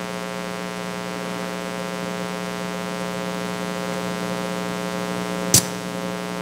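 Steady electrical mains hum with a row of evenly spaced overtones, and a single sharp click about five and a half seconds in.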